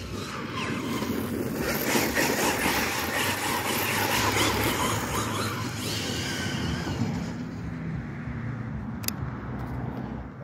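Losi Super Baja Rey 2.0 1/6-scale electric RC truck driving over grass: motor and drivetrain whine under the rush of tyre and wind noise. It builds over the first couple of seconds and eases off in the second half, with one sharp click near the end.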